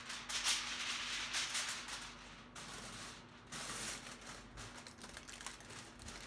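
Aluminium foil and a stiff plastic lid crinkling and rustling as the lid is handled and pressed down onto a foil-lined box. The noise comes in irregular bursts with small clicks, heaviest in the first two and a half seconds and again briefly near four seconds. A faint steady hum lies underneath.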